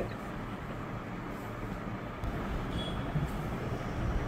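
A pause in speech, filled with a steady low hum and hiss of background noise picked up by a video-call microphone.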